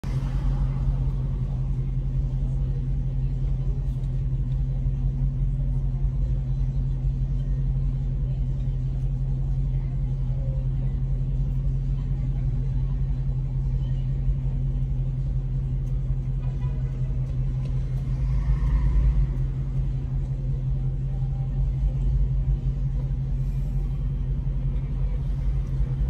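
Car engine idling steadily while the car stands still, a constant low hum heard from inside the cabin.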